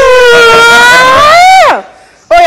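A person's long, loud held scream on one high pitch, rising near the end and then sliding sharply down and stopping just before the end.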